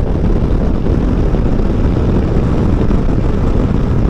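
Steady rush of wind and engine noise from a BMW F 900 XR parallel-twin touring motorcycle cruising at about 110 km/h, with heavy wind on the helmet microphone.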